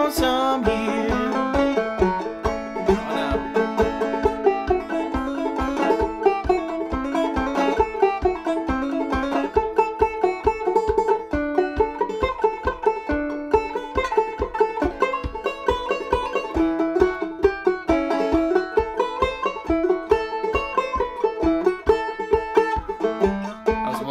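A 1976 Bicentennial banjo, half plastic, picked in a steady instrumental break of fast rolling notes, over a regular low thump about twice a second.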